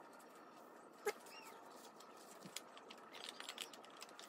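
Faint handling of paper on a wooden table: quiet rustles and light ticks, with one sharp tap about a second in followed by a brief small squeak.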